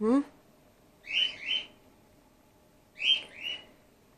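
Baby grey-headed flying-fox pup calling: two high, squeaky calls about two seconds apart, each made of two short notes.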